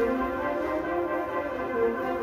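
High school concert band of brass and woodwinds playing slow, held chords, with the notes shifting gently.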